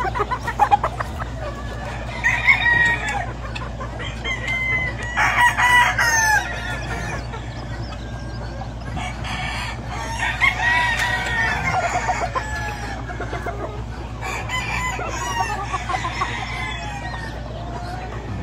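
Gamefowl roosters crowing in turn, about four long crows in all, with some clucking between them.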